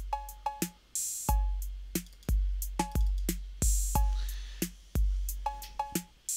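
Roland TR-808-style drum kit (Ableton's Kit-Core 808) looping a simple beat at 90 BPM: long, low, slowly decaying kick drums, closed hi-hats, snare and short two-tone 808 cowbell hits.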